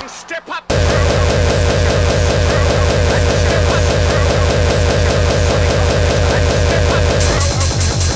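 Speedcore electronic music: the track cuts out abruptly for well under a second, then crashes back in as a dense wall of fast, distorted kick drums and noise.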